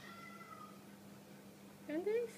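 Small dog whimpering: a faint, thin high whine over the first second, then a short, louder rising meow-like cry right at the end.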